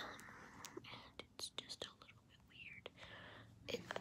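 A girl whispering close to the microphone, breathy and unvoiced, with a few small clicks.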